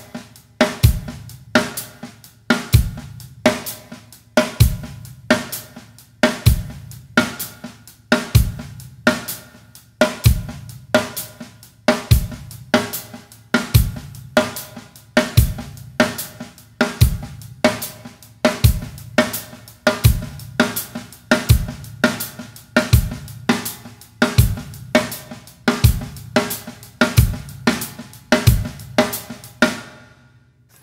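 Yamaha drum kit playing a steady groove: accented sixteenth notes on the hi-hat over kick drum, with quiet snare ghost notes that give it a swung feel. The playing stops at the very end.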